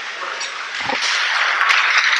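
Ice hockey rink sound: a steady hiss of skate blades on the ice, with a few faint clicks of sticks or puck.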